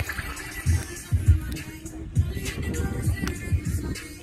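Background music with a bass beat.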